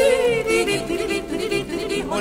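Recorded Alpine yodeling music with instrumental accompaniment: a held, wavering sung note at the start, then a run of shorter notes.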